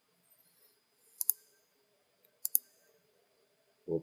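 Computer mouse clicking twice, about a second in and again about two and a half seconds in. Each click is a quick pair of ticks.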